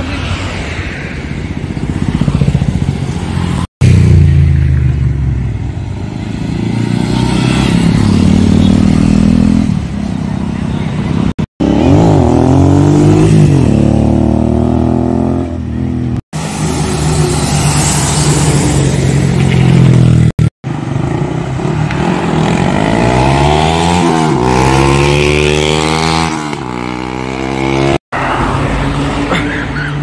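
Motorcycles riding past one after another, engines revving, their pitch rising and falling as each goes by. The sound cuts out abruptly for an instant several times.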